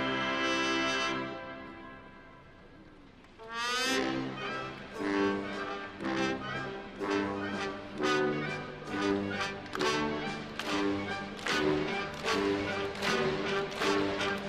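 Military brass band with sousaphones, trombones and trumpets. It holds a chord that dies away about a second in, then after a short pause a rising run launches a brisk march with a steady beat.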